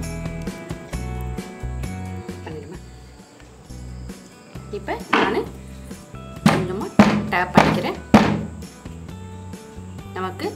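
A batter-filled aluminium cake pan is knocked down against the counter several times, about one knock every half second, to release air bubbles from the batter. Background music plays throughout.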